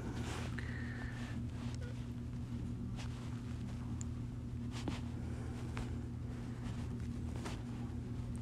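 Steady low hum with a few faint, scattered clicks.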